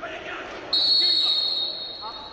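A referee's whistle: one long, high blast starting just under a second in and fading slowly, stopping the wrestling bout.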